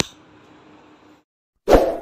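A sharp click as the recording stops, faint room noise that cuts out about a second in, then near the end a short, loud pop sound effect from an animated subscribe-button end card.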